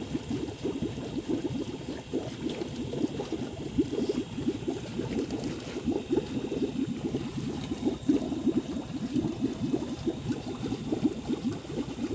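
Nile tilapia fingerlings splashing and flapping as handfuls are moved from a wet hand net into a plastic bag of water: a fast, irregular run of small wet splashes.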